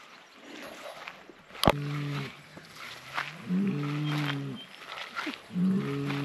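A bull bellowing: three low, drawn-out calls about two seconds apart, the middle one the longest. A single sharp click comes just before the first call.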